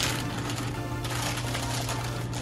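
Paper pattern and transfer paper crinkling and rustling as they are pulled off a pumpkin. A sharp tearing burst comes at the start, then continuous crackle.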